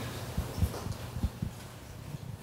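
A few soft, irregular low thumps: handling noise from a handheld microphone being held and shifted in the hand.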